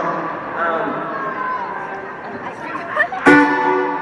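Arena crowd noise full of voices calling out, then about three seconds in a single chord strummed on an amplified acoustic guitar rings out briefly.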